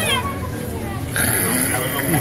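Children's and adults' voices talking and calling. A steady hiss comes in just after a second.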